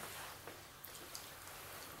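Quiet room tone with a couple of faint clicks about a second in.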